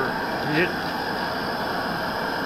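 Small propane-butane canister stove burner running with a steady hiss under a pot of water that is beginning to bubble.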